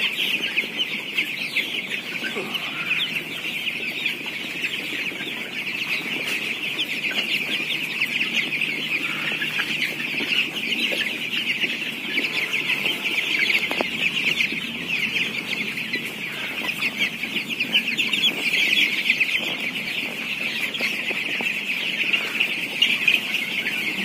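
A large flock of 16-day-old broiler chickens calling constantly: a dense mass of overlapping high-pitched peeps that never lets up.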